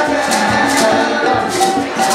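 Upbeat music: a group of voices singing over accompaniment, with a shaker-like percussion keeping a steady beat.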